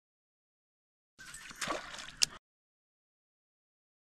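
A cast spinnerbait landing in the river: about a second of watery splash, with one sharp click near its end.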